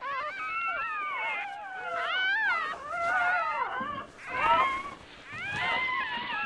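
Young red fox cubs whining and mewing: several high, wavering calls overlapping one another, with short breaks.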